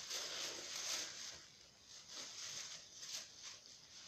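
Thin plastic carrier bag rustling and crinkling as it is handled, in faint irregular bursts with short pauses between them.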